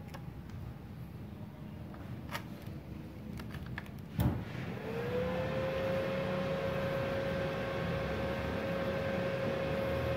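Multipro MIG/MMA/TIG 160A-SC inverter welder powering on: a click about four seconds in, then a hum that rises briefly and settles into a steady tone as the machine runs idle. It runs on the 900-watt supply without tripping the 4-amp breaker.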